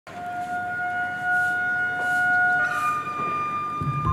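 Opening of background music: long held notes that step to a new, higher pitch about two-thirds of the way through, with low bass notes coming in at the very end.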